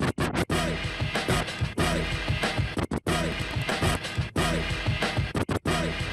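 DJ scratching a record sample over a beat on a two-platter DJ setup, the pitch of the scratched sound sliding up and down. The crossfader chops the sound off in short, sudden gaps, at the start, about three seconds in and twice near the end.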